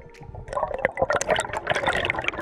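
Air bubbles and water churning around an underwater camera as a freediver rises toward the surface: a dense bubbling crackle that starts about half a second in.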